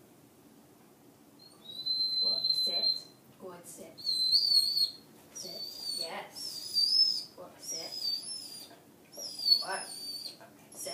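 A person whistling. A steady high note starts about two seconds in, then several wavering, warbling high notes follow with short gaps, used to tempt a puppy out of its sit-stay.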